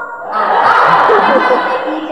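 Audience laughing together, breaking out about half a second in and fading slightly near the end.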